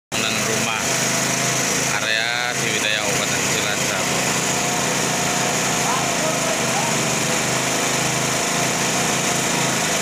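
Small engine mounted on a bore pile drilling rig running steadily at a constant speed, with a man's voice calling out briefly about two seconds in.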